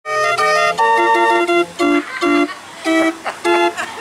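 Small street organ playing a tune, its pipes sounding in short choppy phrases with brief gaps between them.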